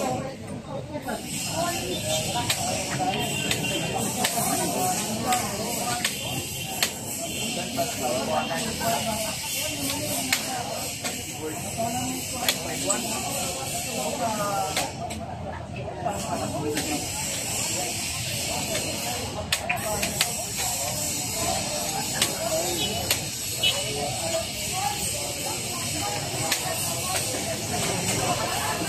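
Several men chatting around outdoor chess tables, with a steady high hiss and occasional sharp clicks of chess pieces being set down on the boards.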